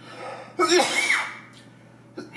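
A man coughing hard once, about half a second in, the cough trailing off in a voiced sound that falls in pitch.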